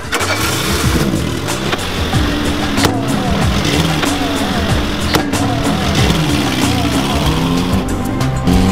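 Background music playing over a small petrol hatchback, a Peugeot 205, driving in with its engine running and tyre noise.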